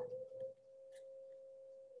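A faint steady pure tone, starting about a quarter of the way in and holding one pitch.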